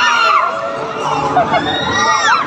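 Several riders on a spinning amusement ride screaming and shouting together, with long high screams that rise and fall.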